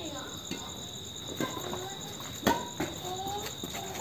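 Crickets chirping steadily in the background, with a few sharp clicks of badminton rackets striking a shuttlecock, the loudest about two and a half seconds in.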